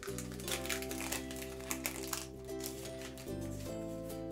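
Background music of sustained, slowly changing chords, with light crinkles and taps from paper sticker sheets being handled.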